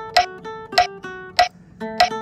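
Nylon-string classical guitar playing slow single notes of a melody line. Three sharp clicks sound over it at an even beat, about 0.6 s apart. The notes stop briefly about a second and a half in, then start again.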